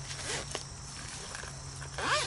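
Quiet handling of a fabric folding solar panel: faint rustles and a few light ticks as the flap over its mesh pocket is folded. Under it runs a faint steady low hum.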